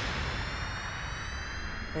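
Anime energy-beam blast sound effect: a steady high whine with several overtones over a loud rushing noise, as a beam weapon strikes a monster.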